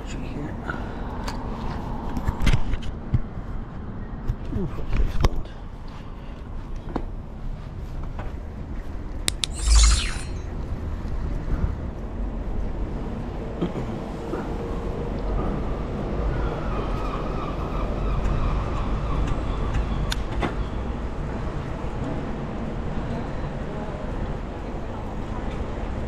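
Wind rumbling on an action camera's microphone with tyre and road noise from a bicycle ridden along a city street, broken by a few knocks and a brief high squeal just before ten seconds in.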